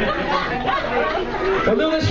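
A person's voice talking, with chatter from other voices.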